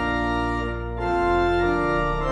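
Organ playing a hymn tune in held chords, with a short break between phrases just under a second in before the next chord comes in.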